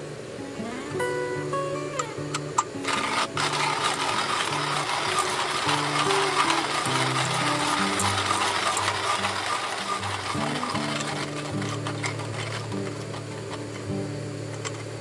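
Comandante hand coffee grinder being cranked, its burrs crisply crunching through coffee beans in a continuous gritty rasp from about three seconds in. Background music plays underneath.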